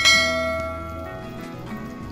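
A bell chime, likely the sound effect of a subscribe-button animation, strikes once at the start and rings out, fading over about a second over soft background music.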